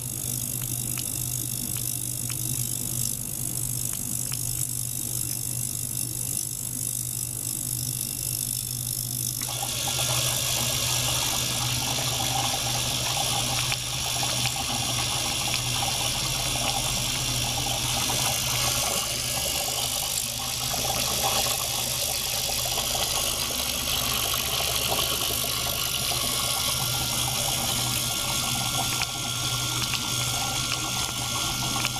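Ultrasonic cleaner switching on about a third of the way in: a sudden, steady hissing, crackling noise as the ultrasound cavitates the water in its stainless tank, over a steady low mechanical hum.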